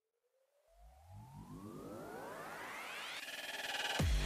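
Electronic riser: a synthesized sweep rising steadily in pitch and growing louder over about three seconds, with a low rumble underneath, turning into a fast fluttering pattern near the end.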